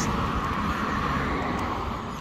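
A car driving past: a steady rush of tyre and engine noise that slowly fades.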